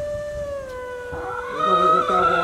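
An elderly woman's voice holding one long note that sinks slightly in pitch, then steps up to a higher note near the end.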